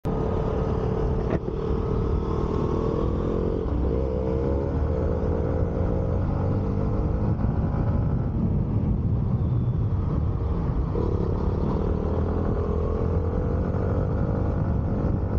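Yamaha MT-15's single-cylinder engine running at road speed, its pitch rising and falling with the throttle, under a steady rush of wind on the microphone.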